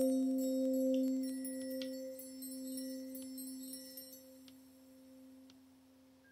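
A struck bell rings out and slowly fades over several seconds, its deep tone carrying a higher overtone. Light, high chime tinkles sound now and then above it and die away about two-thirds of the way through.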